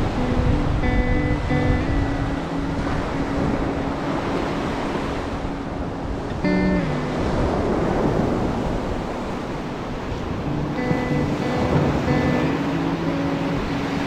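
Waves breaking on a sandy beach in a rough sea, with wind on the microphone, under background music of held, stepping notes.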